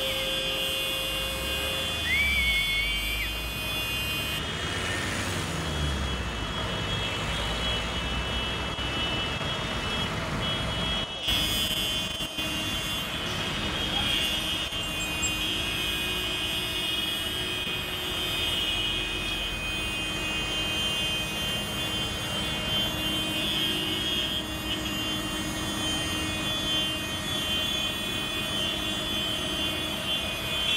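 Diesel farm tractors and street traffic running, a steady engine drone; the deep rumble is heaviest in the first few seconds.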